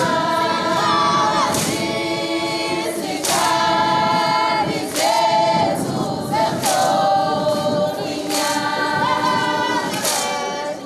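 A group of young Zulu women singing together unaccompanied, a cappella, in phrases of held notes that break about every second and a half.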